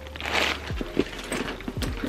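Crinkling of tissue-paper stuffing and handling of a faux-leather mini backpack: a short rustle near the start, then a few light taps as the bag is moved.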